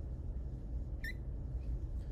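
Room tone: a steady low hum, with one brief faint high chirp about a second in.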